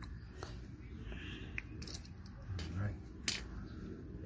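A few small clicks and snips from handheld wire strippers working on a wire, with one sharper click a little after three seconds in.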